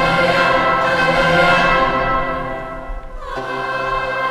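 A large girls' choir singing in sustained chords. A held chord tapers off about two seconds in, and the singing comes back with a new chord shortly after three seconds.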